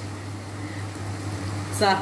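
Breaded chicken breast cutlets frying in a pan of oil and clarified butter, an even sizzle over a steady low hum.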